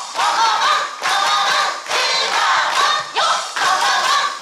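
Dance song with voices singing and chanting in short phrases about a second long, a woman singing along into a microphone.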